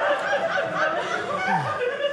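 Audience laughing, many voices at once.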